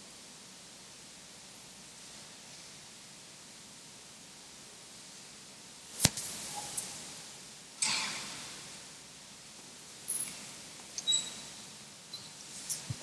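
Quiet church room tone broken by small handling noises: one sharp click about halfway through, a short rustle a couple of seconds later, and a few small high clicks and pings near the end.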